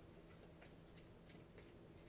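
Near silence, with faint soft ticks of tarot cards being handled, spaced unevenly.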